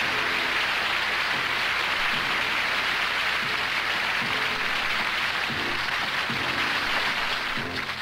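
A television studio audience applauding steadily, with an orchestra faintly playing underneath. The applause dies away near the end as the music takes over.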